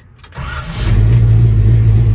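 1970 Chevrolet C-10 pickup's engine being started: about half a second in the starter cranks briefly, then the engine catches and settles into a steady, loud, low running, heard from inside the cab.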